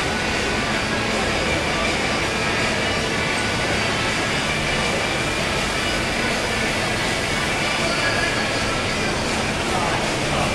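Fountain jets spraying and splashing back into a pool, a steady rush of water.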